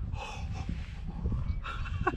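Low rumble of wind buffeting the microphone, with a man's soft breathing.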